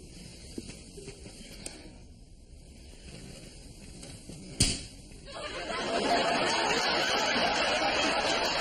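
A brief sharp sound a little before five seconds in, then studio audience laughter that swells up and carries on.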